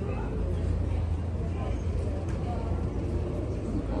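Steady low hum of a running air-conditioning unit, with faint voices in the background.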